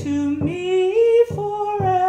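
A woman singing a slow sacred song solo, holding long notes and sliding between pitches, over low sustained accompanying chords.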